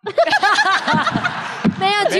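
A person laughing into a microphone, a quick run of short 'ha' sounds that starts suddenly.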